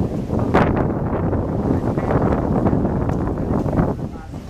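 Wind buffeting the camera microphone: a loud, low rumbling noise that surges in gusts, with a sharp gust about half a second in.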